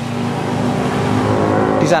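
A motor vehicle engine running at a steady pitch close by, growing slightly louder.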